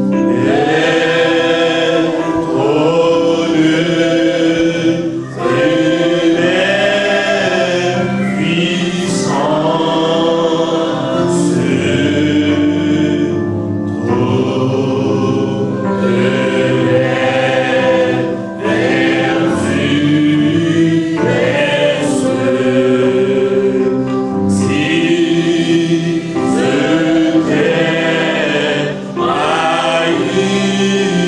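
A man singing a slow gospel-style song into a microphone, with steady held notes of accompaniment beneath the voice and short breaths between phrases.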